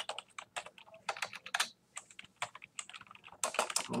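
Computer keyboard typing: a run of quick, unevenly spaced keystrokes as a short phrase is typed.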